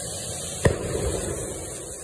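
A spark-spraying firework giving a steady rush, with one sharp bang about a third of the way in and a few smaller pops after it.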